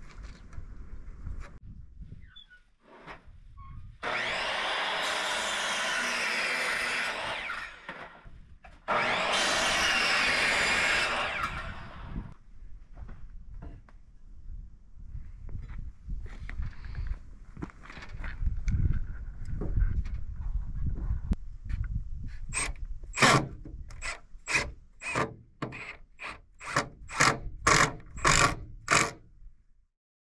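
Cordless drill driving screws into lumber roof framing in two steady runs of a few seconds each. Near the end comes a quick series of strokes on wood, about two to three a second and speeding up.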